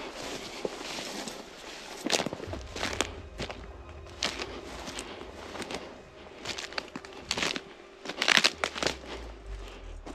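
Irregular crunching and crackling close to the microphone, with sharper cracks about two and eight and a half seconds in.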